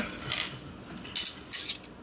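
Steel wet-clutch back plates and small coil springs being handled on a wooden table: a brief metallic clink just after the start, then a longer clatter and scrape about a second in.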